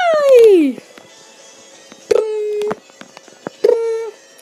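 A child's voice making a falling swoop sound effect, then two short steady beep-like tones about a second and a half apart, with light knocks and taps from plush toys being handled.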